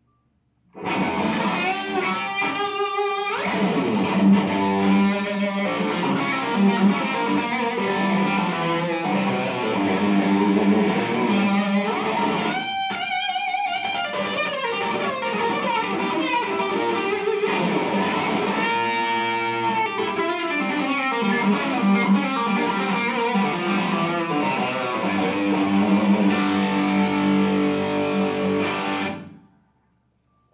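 Electric guitar played through the Girth channel (channel 2) of a Vox Night Train 50 valve amp head. The playing starts just under a second in, breaks off briefly about halfway through, and stops suddenly shortly before the end.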